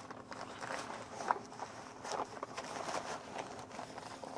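Fabric lunch bag rustling and rubbing as a bento box is pushed down inside it, with a few faint scattered knocks.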